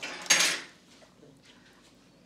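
Dishes and cutlery clattering in one brief burst in the first half second, then only a few faint small clicks.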